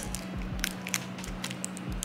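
Clear plastic protective film being picked and peeled off a metal bag clasp, giving irregular little crinkles and crackles.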